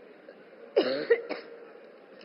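A woman's short cough, about three-quarters of a second in, followed by two quick smaller catches.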